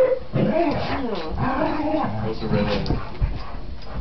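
Black Labrador retriever and springer spaniel vocalizing at each other as they play rough, with people's voices talking alongside.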